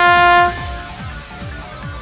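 Trombone holding one long note that stops about half a second in, leaving the backing track with a fast, steady drum beat.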